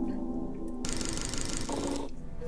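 Opening logo sting of a documentary: a held low chord for about the first second, then a fast, even rattling texture high up for the rest.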